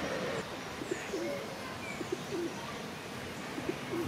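Feral pigeons cooing: a string of short, low coos that rise and fall in pitch.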